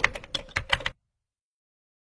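Keyboard-typing sound effect: a rapid run of about eight sharp clicks lasting under a second, then it cuts off abruptly.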